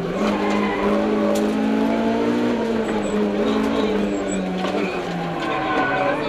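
Mitsubishi Mirage CJ4A rally car's four-cylinder engine, heard from inside the cabin, running hard at high revs at a fairly steady pitch that drops a little near the end.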